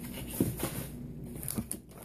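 Faint rustling and a few light taps as small items are handled, over low room hum.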